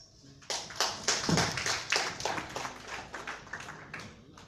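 An audience applauding, starting about half a second in and thinning out toward the end.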